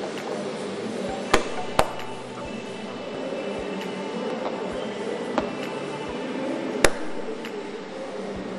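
Factory floor din with four sharp clanks: two close together early, one faint, and a loud one near the end.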